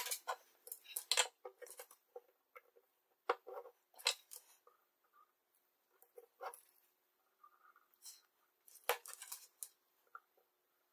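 Light metallic clicks and rattles from a metal helping-hands soldering stand being handled and repositioned, its jointed arms and alligator clips knocking together, in irregular clusters with short pauses between them.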